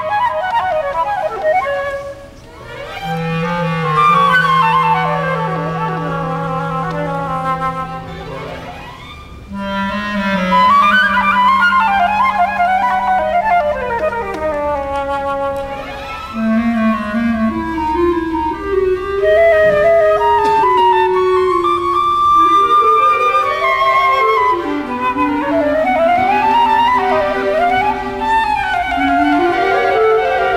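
Solo concert flute playing flowing melodic lines with orchestral accompaniment, over long held low notes, with a brief quieter moment about two seconds in.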